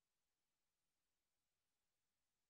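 Near silence: only a faint, even hiss of digital noise.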